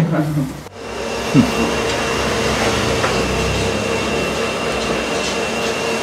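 A machine running with a steady hum and a faint high whine, starting about a second in and holding level.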